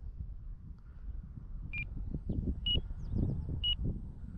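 Flight timer beeping, short high beeps about once a second, signalling that the 6-minute flight time has run out. Wind rumbles on the microphone underneath.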